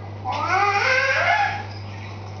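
A single loud, drawn-out, high-pitched call whose pitch dips and then rises again, lasting a little over a second. It sounds over a steady low hum.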